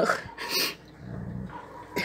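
A dog growling low for about a second, after two short noisy sounds near the start.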